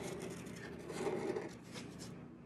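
Embossing pen tip rubbing along textured watercolor paper as it traces an outline: faint, scratchy strokes, a little louder about a second in.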